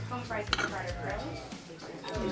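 A metal fork clinking and scraping on a plate of pancakes, with one sharp clink about half a second in, over indistinct background voices.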